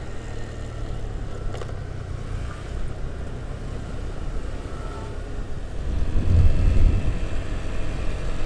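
A Honda Vario scooter on the move: a low wind rumble on the action camera's microphone over the engine running steadily, swelling louder about six seconds in.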